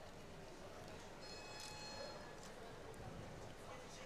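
Faint, steady ambience of a competition hall, a low murmur with no distinct events, and a brief faint high-pitched tone a little over a second in.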